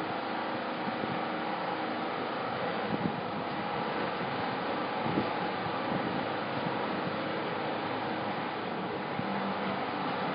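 Steady background rumble and hiss of room ambience, with a couple of faint knocks about three and five seconds in.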